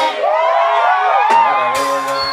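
A live mugithi band briefly drops its drums and bass while the crowd cheers and whoops in several rising and falling voices. The band comes back in with a drum hit near the end.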